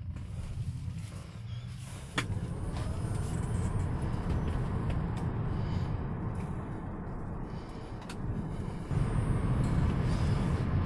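Car cabin road and engine noise while driving, picked up by the smart glasses' built-in microphones: a steady low rumble. A sharp click comes about two seconds in, after which the noise gets louder, and it rises again near the end.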